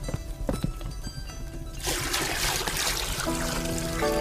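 Background music, with water pouring into a steaming wooden tub for about a second and a half, starting about two seconds in.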